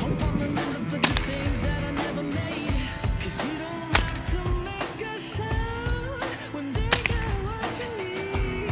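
A pop song with singing, cut through by three sharp single cracks from a Smith & Wesson M&P 15-22 .22 rifle firing, about three seconds apart.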